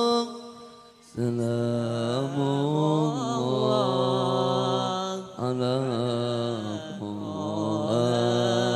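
A man's solo melodic Arabic devotional chanting in the qori style, sung into a microphone with long held, ornamented notes. One phrase fades out, a new, lower phrase begins about a second in, and there is a short breath about five seconds in before the singing goes on.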